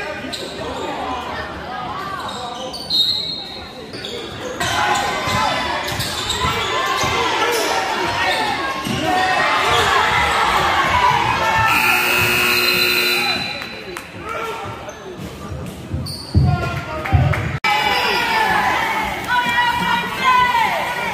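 Basketball game on a hardwood court in a reverberant gym: a ball bouncing and voices shouting, with a buzzer sounding one steady tone for about a second and a half a little past the middle.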